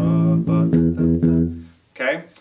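MTD Kingston electric bass plucked with the fingers, playing the opening two beats of a plucking-speed drill: open A and E notes in a mixed dotted-eighth and sixteenth-note rhythm. The last note rings and fades away shortly before the end.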